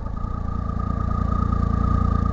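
Triumph motorcycle engine pulling along the road, growing steadily louder as it gains speed, with a thin steady high whine over the engine note.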